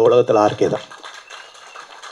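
A man speaking into a handheld microphone for just under a second, then breaking off into a pause of low background noise.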